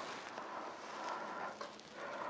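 Faint rustling and handling noise as a person shifts while seated, moving a football boot on his foot and his fleece sleeves, with a few soft touches.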